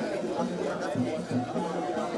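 Several people talking at once, overlapping conversation with no other distinct sound.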